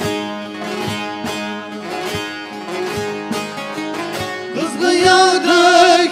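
Bağlama (Turkish long-necked saz) playing a plucked folk melody over a steady drone. Nearly five seconds in, a man's voice comes in singing a türkü, with a strongly wavering pitch.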